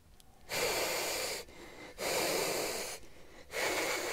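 A goose hissing three times, each hiss about a second long with short gaps between.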